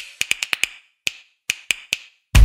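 A run of about ten sharp, dry clicks like wood-block taps, in an uneven rhythm: six quick ones in the first second, then four spaced-out ones. They are the percussive opening of an outro music jingle.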